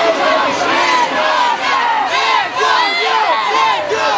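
A crowd of protesters shouting and yelling over one another, many raised voices at once, in a confrontation with riot police.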